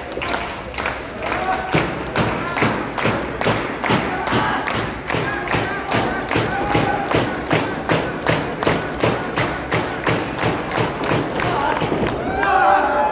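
Steady rhythmic thumping, about three even beats a second, with voices yelling over it.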